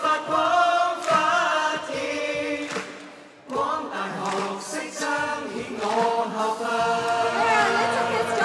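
A group of voices singing a song together, choir-like, breaking off briefly about three and a half seconds in before going on.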